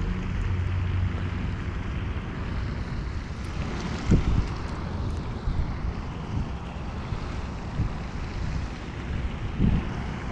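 Wind buffeting the microphone: a steady rumbling hiss, with two low thumps, one about four seconds in and one near the end.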